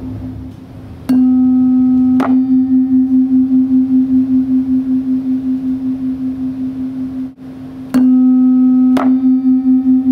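Two tuning forks on wooden resonator boxes struck with a mallet one after the other: the first rings a single steady tone, and when the second, of almost the same pitch, joins about a second later, the sound swells and fades a few times a second. These are beats from the two forks' slightly different frequencies. The strike-strike-beating sequence happens twice.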